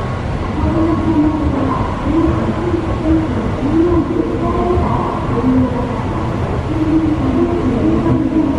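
Steady rumble of subway-station machinery and trains, heard while riding a long escalator, with faint wavering tones drifting through the background.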